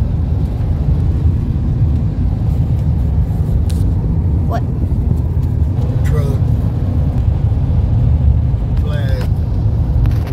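Steady low rumble of road and engine noise inside a moving car's cabin, with a few brief snatches of a voice about halfway through and near the end.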